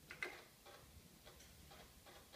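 Faint, irregular clicks and ticks over near silence, the loudest about a fifth of a second in.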